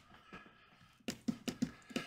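Quiet, then a quick run of about six sharp clicks in the second half: computer mouse and keyboard clicks.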